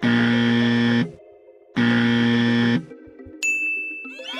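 Two identical electronic buzzer-like tones, each about a second long and cutting on and off sharply, with a pause of under a second between them, over soft background music. A thin high tone begins near the end.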